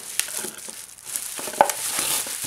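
Bubble wrap crinkling and rustling with quick little crackles as a bubble-wrapped box is gripped and lifted out of a cardboard carton.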